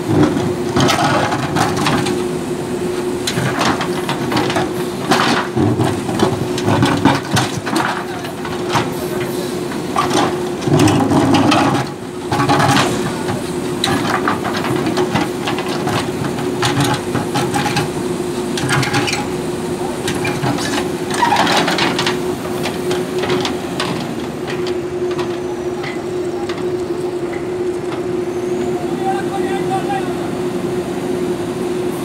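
JCB backhoe loader's diesel engine running with a steady drone while its rear backhoe arm digs and swings the bucket. Short knocks and scrapes from the bucket and arm come and go, with a louder stretch of engine noise under load around the middle.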